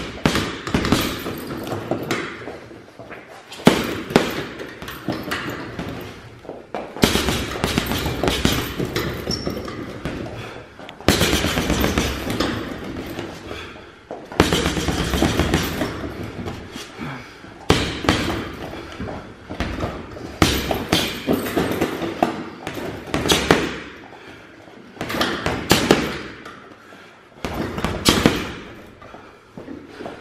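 Boxing gloves punching a leather heavy bag in rapid flurries of blows, each run lasting about two to three seconds with short pauses between.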